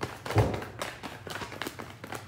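A deck of tarot cards being shuffled by hand: a quick run of light card slaps and clicks, with one heavier thump about half a second in.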